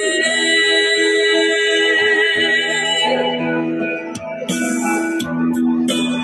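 A pop song from a street performer's microphone and loudspeaker, sung over a backing track, with one long held note for about the first three seconds before the melody moves on.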